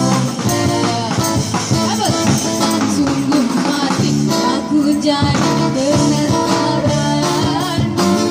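A live street band playing an Indonesian dangdut-style song: strummed acoustic guitar, a small drum kit and a jingling hand tambourine under a woman's singing through a microphone and small amplifier. The music runs at a steady beat with no pause.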